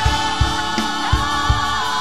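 Gospel song sung by a small group of women singers with microphones, over accompaniment with a steady beat.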